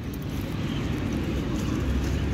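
Steady low rumble of outdoor background noise, with no clear single event standing out.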